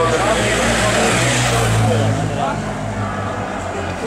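Escort motorcycle riding past close by, its engine note dropping in pitch as it goes by about one and a half to two seconds in, then fading.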